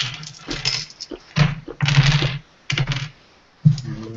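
A handful of six-sided dice shaken and rolled onto a wooden tabletop: a run of clattering clicks.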